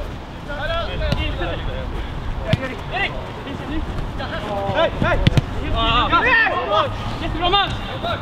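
Football players shouting to each other on the pitch, calling for the ball ("Här! Hej!"), several voices overlapping. There are a couple of sharp knocks, about two and a half and five seconds in.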